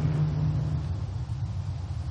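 Steady low rumble, like distant engines, with a held low hum that fades out about a second in.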